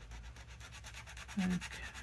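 Uni Posca paint marker scrubbing on paper in quick, even back-and-forth strokes as an area is coloured in. A short hum from a woman's voice comes about one and a half seconds in.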